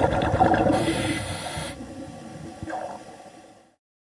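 Underwater sound of scuba diving: exhaled regulator bubbles gurgling and crackling, with a hiss lasting about a second near the start. The sound fades and cuts off suddenly near the end.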